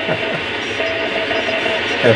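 Shortwave receiver's speaker with steady band static hiss. A single-pitched Morse code (CW) tone comes in under a second in and holds steady.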